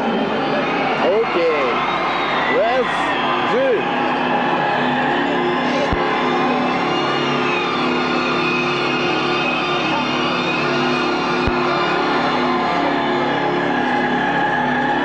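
Live concert music heard from inside the crowd through a camcorder microphone: a sustained droning chord over a dense wash of crowd noise, with whoops rising and falling in the first few seconds.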